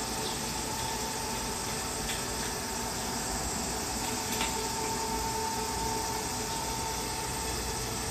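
Steady machine hum and noise with a faint steady tone, from the cooling units of the drink vending machines standing beside the capsule machine. Two faint clicks sound about two and four seconds in.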